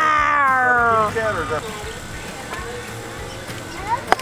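A young child's voice imitating a lion's roar: one long drawn-out call falling in pitch, ending about a second in.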